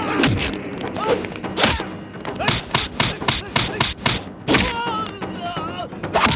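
Film fight sound effects: a string of punch and kick impacts, thudding hits that come in a fast volley of about eight blows in the middle, then a heavier hit followed by a drawn-out cry near the end.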